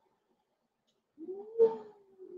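A single drawn-out, meow-like call begins a little past halfway in. It rises and then slowly falls in pitch, with a sharp click near its start.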